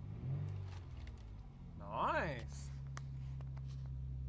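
Chrysler 300M's 3.5-litre V6 idling steadily at about 1000 rpm, just after a cold start following a long time unused. About two seconds in, a short pitched sound rises and then falls over the idle.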